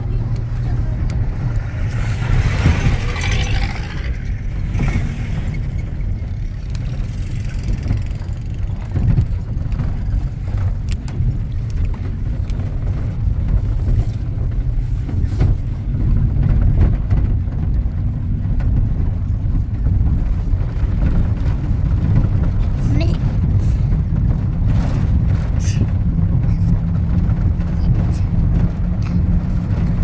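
Inside a vehicle driving on a rough dirt road: a steady low rumble of engine and tyres on the unpaved surface, with the cabin shaking over the bumps.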